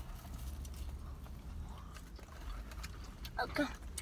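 Faint chewing and mouth sounds as a slice of cheese pizza is bitten and eaten, over a steady low hum in a car cabin.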